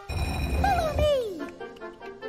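Cartoon sound effect of a hidden door in a brick wall rumbling open, starting suddenly and lasting about a second, over children's background music. A character's falling exclamation rides over it, and the music carries on quieter afterwards.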